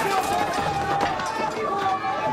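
Raised voices of several people overlapping in a scuffle, one of them pleading 'no... listen to me'.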